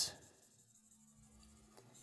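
Faint scratch of a felt-tip marker drawing strokes on a whiteboard.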